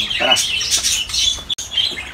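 Small caged birds in an aviary calling with many short, high-pitched chirps, several overlapping.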